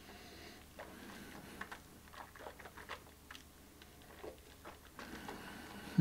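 Faint wet mouth clicks and smacking as a sip of whisky is tasted and chewed around the mouth.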